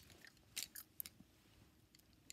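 Near silence: room tone with a few faint, short clicks in the first second, the first the sharpest.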